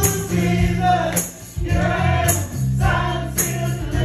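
A man singing a gospel song into a microphone, accompanied by an electronic keyboard with a steady bass line. A sharp, high percussion hit falls about once a second, keeping the beat.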